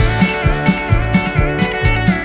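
Country band playing an instrumental passage with no singing, on a steady beat from drums and upright bass. An electric guitar plays a lead line with bent notes over the band.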